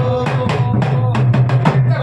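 Dholak and deru drums beaten in a quick folk rhythm for a deru bhajan, with a held sung note cut off just after the start.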